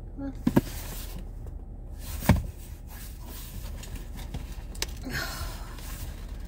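A car's engine idling, a steady low hum heard inside the cabin, with a few sharp knocks and a rustle as a cardboard box is picked up and handled; the loudest knock comes about two seconds in.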